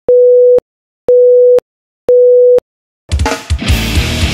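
Three loud electronic beeps of one steady mid-pitched tone, each about half a second long and one second apart, with silence between them. Just after the third, a hardcore band comes in loud with drums, bass and distorted guitar.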